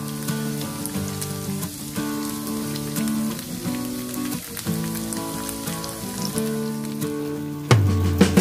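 Tofu cubes and onions sizzling in oil in a frying pan, with a fine crackle under steady acoustic guitar background music. Near the end, a wooden spatula starts stirring and knocking against the pan.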